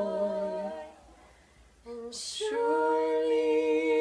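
A small group of mixed voices, two women and a man, singing a cappella in harmony. A held note ends within the first second, and after a brief pause and a short hiss the group comes in on a new phrase of long held notes about two and a half seconds in.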